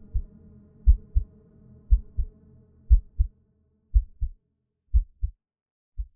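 A slow heartbeat sound effect in the soundtrack: low double thuds (lub-dub), one beat about every second. A faint low drone sits under it and fades out about three seconds in.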